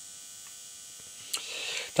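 Quiet room tone with a faint steady electrical hum, a single sharp click about one and a half seconds in, and a short intake of breath just before speech resumes.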